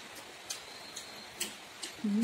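Mouth sounds of eating by hand: a few sharp, irregular wet clicks from chewing and lip smacks, about four in two seconds, over a quiet background.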